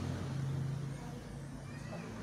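A low, steady engine-like hum, louder in the first second and then easing off.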